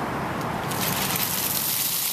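A bucket of ice water poured over a person: a rush of gushing, splashing water begins a little under a second in.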